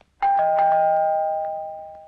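Doorbell chime ringing a two-note ding-dong: a higher note, then a lower one a moment later, both fading slowly.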